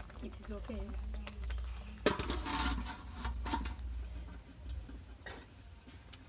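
A soot-blackened metal pot is set down upside down over a metal saucepan as a lid, a sudden knock about two seconds in followed by about a second and a half of scraping and rattling as it settles.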